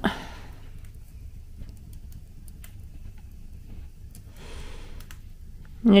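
Quiet room with a steady low rumble and a few faint clicks, and a soft breathy exhale about four and a half seconds in.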